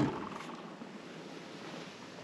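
A plastic gallon jug pushed onto a metal wire shelf: one dull knock at the start that dies away within half a second, then only faint background noise.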